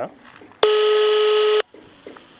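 A single steady electronic beep from a mobile phone, about a second long, starting and stopping abruptly, as a call is being placed.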